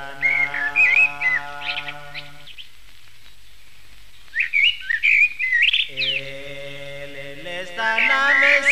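Birds chirping in two quick spells of rising and falling calls, over a held instrumental chord of the song. The chord stops about two and a half seconds in, leaving the chirps alone, and a new chord comes in about six seconds in.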